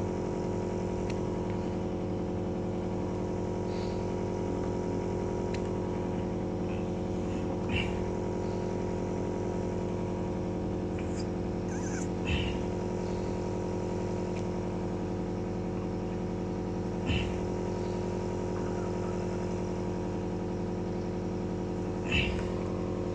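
A steady, even mechanical hum, with a few short faint sounds about every four to five seconds.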